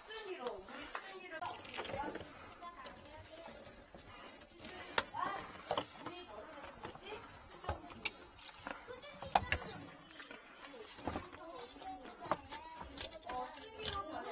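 Faint voices talking in the background, with scattered sharp clicks and knocks from plastic sink drain pipes and fittings being handled under the sink.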